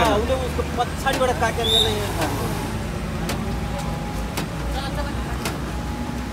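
Steady low rumble of road traffic and vehicle engines running. Several people talk over it in the first couple of seconds, and then the voices fade.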